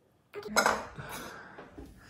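A sudden clink and clatter of hard objects, loudest about half a second in and fading over the next second.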